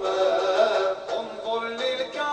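Music: a voice singing an Arabic devotional song in a chant-like melody.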